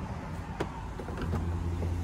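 Low steady hum of an idling vehicle engine, growing stronger about a second in, with a few light clicks and knocks.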